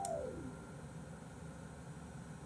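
Faint steady room hiss of a small room. A click and a short falling tone fade out in the first half second.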